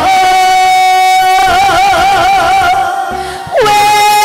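A woman singing a Korean trot ballad live into a microphone over a backing track. She holds one long note that breaks into wide vibrato, then slides down near the end and takes up another held note.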